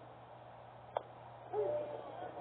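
A single sharp pop about a second in, a pitched baseball smacking into the catcher's leather mitt. Near the end a voice starts a long, held shout.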